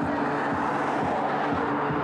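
Electronic music with a steady beat, about two beats a second, over sustained low droning notes.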